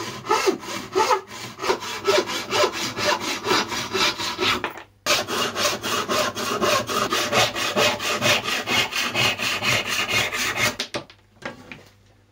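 Hand saw cutting plywood in quick, even strokes, trimming a piece flush. The sawing breaks off briefly about five seconds in, picks up again, and stops about a second before the end.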